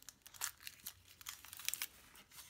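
Thin foil wrapper of a Kinder Surprise chocolate egg crinkling as it is peeled off by hand, in quick irregular crackles, the sharpest about half a second in and a cluster near the end.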